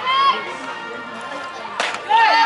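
A single sharp pop near the end, a pitched softball smacking into the catcher's mitt, over high-pitched chatter and calls from the players.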